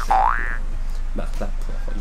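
Cartoon-style sound effect added in editing: a short tone that holds, then slides up in pitch, lasting about half a second. It is the last of three in quick succession and is followed by a man speaking.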